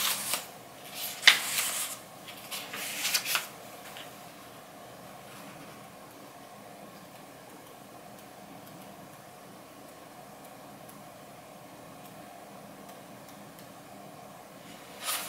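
Paper pages of a paperback book being turned by hand: a few quick papery rustles and flicks in the first three or four seconds, then only a faint steady hiss.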